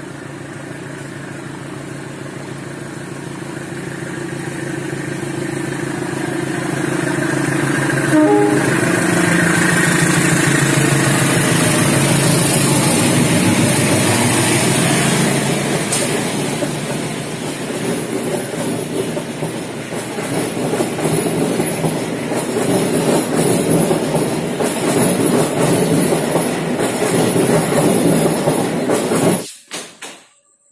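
Diesel locomotive hauling a passenger train approaches and passes close by with its engine running, growing louder over the first several seconds. Then the passenger cars roll past with a rhythmic clickety-clack of wheels on the rails. The sound cuts off abruptly just before the end.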